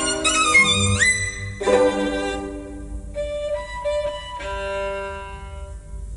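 A classical violin recording played back over a hi-fi system with a valve amplifier and Trio LS-707 loudspeakers. A note slides upward about a second in, then quieter held notes follow and fade near the end.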